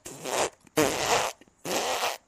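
Three breathy, hissing vocal bursts from a person on the call, each about half a second long.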